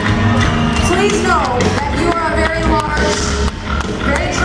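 Live rock band playing loudly with a female lead vocalist singing over guitars, bass and drums, heard from the audience through a phone microphone.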